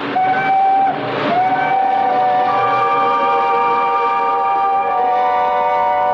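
A train whistle, as in a radio-drama sound effect of a train pulling out: a short steady blast, then about a second in a long held chord of several steady tones.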